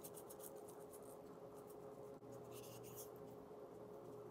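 Spice shaker shaken over raw tuna steaks: faint, quick rattles of seasoning grains in two short bouts, one at the start and one a little past the middle, over a faint steady hum.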